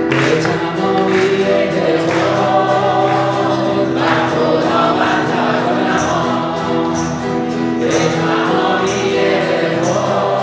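Live worship song: a man singing and strumming an acoustic guitar, with keyboard accompaniment. From about six seconds in, a light high tick marks the beat about once a second.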